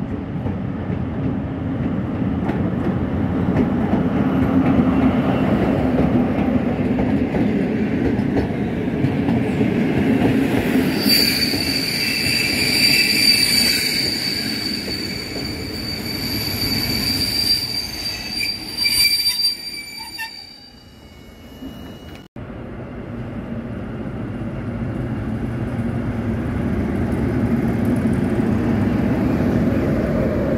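Passenger train headed by a diesel locomotive rumbling past, its coaches' wheels giving a high-pitched squeal from about a third of the way in that fades out after nine seconds or so. After a sudden cut, an SM42 diesel shunting locomotive rumbles, getting louder as it comes close.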